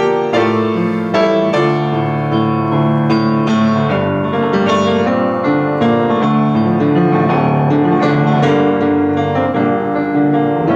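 Kawai 44-inch upright piano being played: a flowing piece of chords and melody over held bass notes, with fast repeated figures in the second half.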